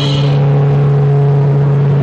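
Live electronic noise music: a loud, steady low drone with a hiss over it. The higher held tones above it fall away shortly after the start.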